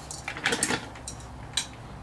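A few light metallic clinks of a steel wrench being handled and set against the mill's spindle-motor mount, a cluster about half a second in and one more near the end.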